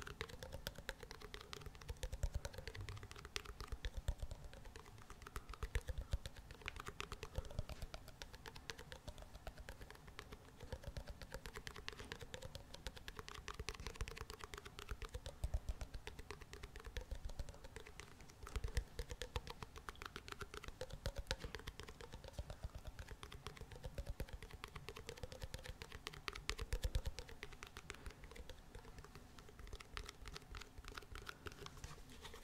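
Rapid fingernail tapping and scratching on a small round lidded tin held close to the microphone, a dense stream of light clicks with louder flurries every second or two.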